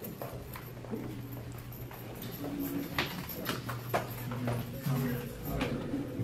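Footsteps of several people walking on a hard floor: irregular shoe clicks, over a steady low hum.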